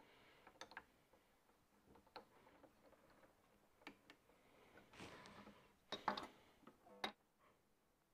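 Faint, scattered clicks and ticks of a hand string winder turning the tuning pegs on a Gibson headstock as new strings are fitted. The clicks are slightly louder and more frequent about five to six seconds in, with one more near the end.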